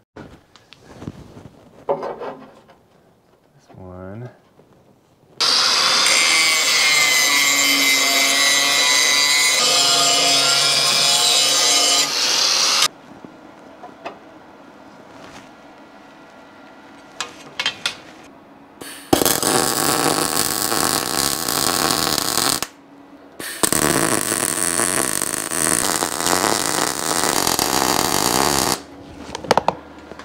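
An angle grinder grinds steel for about seven seconds, its motor whine steady. Then come two long crackling runs of MIG welding, a few seconds each, as a steel angle guard is welded on.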